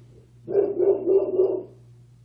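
A dog vocalising off camera: one run of a few short, wavering calls lasting about a second.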